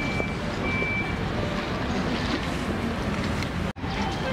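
Wind buffeting the microphone at the open waterfront, a steady rushing noise, with a faint high tone in the first second. The sound drops out for an instant near the end.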